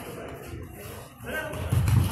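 Quiet sports-hall background with faint, distant voices from the players and spectators; a brief faint voice is heard past the middle, and the background grows louder near the end.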